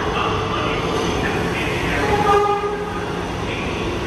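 R211 subway train running on track, with a steady rumble and rattle. About two seconds in, a brief high pitched tone sounds over it.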